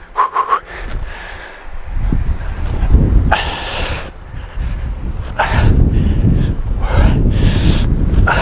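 A man breathing hard as he does pull-ups on an outdoor bar, with a sharp exhale about every second and a half, four in all. A low rumble, most likely wind on the microphone, starts about two seconds in and runs under the breaths.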